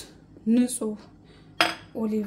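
Kitchenware clinking: a light click at the start, then one sharp clink with a brief ring about one and a half seconds in, as a small glass bowl is set down on a stone worktop. A woman's voice is heard briefly in between.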